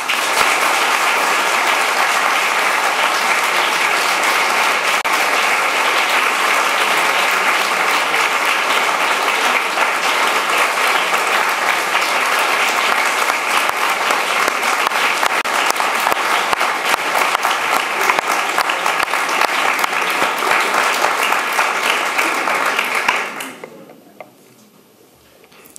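Audience applauding: steady clapping from many hands that starts at once and dies away near the end.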